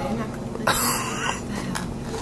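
A person gives one short cough, about half a second in, lasting about half a second.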